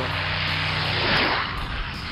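A rushing, engine-like flyby sound effect used as a transition. It swells to a peak about a second in and then fades away.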